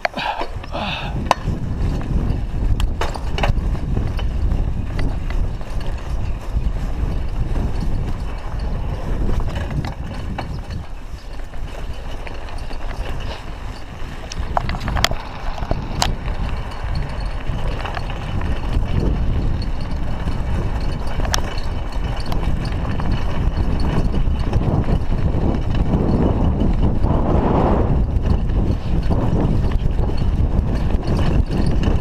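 Riding a bicycle along a road: steady wind buffeting on the camera microphone and tyre rumble, getting louder in the second half, with rattles and a couple of sharp clicks about halfway.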